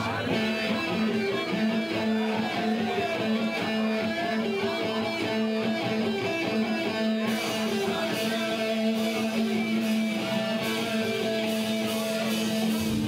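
Electric guitar amplified at a live show, playing a repeating riff pattern over two sustained notes; the sound gets brighter and fuller about seven seconds in.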